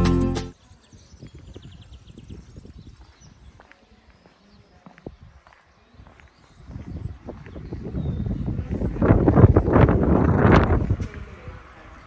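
Background music cuts off about half a second in. Then come faint scattered footsteps and handling clicks, growing into louder irregular footsteps on stone paving with a low rumble of camera handling near the end.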